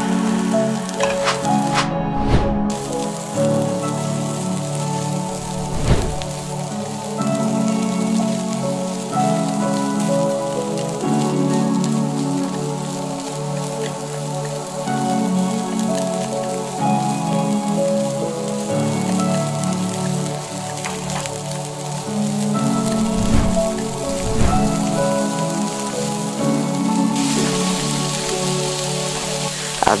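Sliced onion and garlic sizzling in hot oil in a wok, a steady frying hiss, under background music with held notes. A few short knocks stand out briefly.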